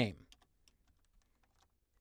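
Computer keyboard typing: a few faint, quick key clicks in the first second, sparser after.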